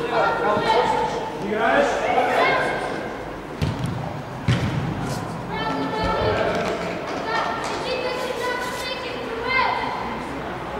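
Raised voices of players and spectators calling out across a large indoor sports hall, with two sharp thuds a second apart near the middle.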